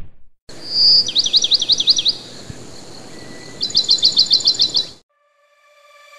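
Songbird calling: a held high whistle, then a quick run of rising-and-falling chirps, and after a short gap a faster run of about ten chirps, over a faint outdoor hiss; the birdsong cuts off abruptly about five seconds in. It opens with the tail of a thud as soil drops onto a pile, and music begins to fade in near the end.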